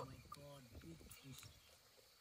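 A faint, low male voice murmuring a few short sounds in the first half, then near silence.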